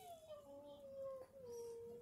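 A small pet's long, faint whine, held on one pitch that sinks slowly and steps down once before it stops.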